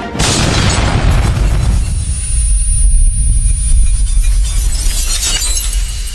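Cinematic logo-reveal sound effect in an intro: a sudden loud crash with a shattering sound just after the start, then a deep boom that rumbles on for several seconds, with a second burst of crashing noise near the end.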